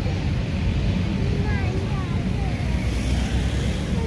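Faint voices of people talking in the background over a steady low rumble.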